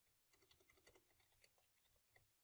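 Faint computer keyboard typing: a quick, uneven run of key clicks as a name is typed.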